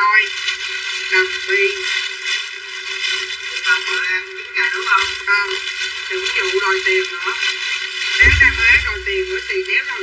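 A person talking continuously in a thin, oddly filtered voice. A deep low thump comes about eight seconds in.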